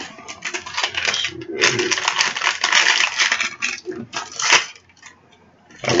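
Small hard plastic dome capsule of a blind-box mini figure being worked open by hand: a dense run of plastic clicking and rattling that stops about four and a half seconds in.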